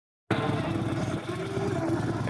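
A Harley-Davidson CVO Ultra Classic's Twin Cam 110 V-twin idling: a steady, low, pulsing rumble that cuts in a moment after the start.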